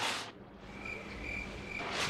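A faint, high-pitched chirping trill that starts a little under a second in and stops just before the end.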